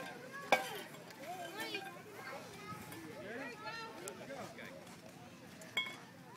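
Background chatter of children's and adults' voices around a youth ballfield, with a sharp knock about half a second in and another just before the end.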